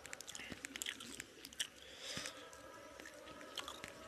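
Close-up chewing of a mouthful of chicken biryani: irregular wet mouth clicks and smacks, busiest in the first second and a half and again near the end.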